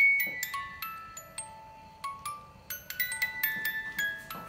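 A music box in a small souvenir house playing a slow melody of single high plucked notes, each ringing on briefly.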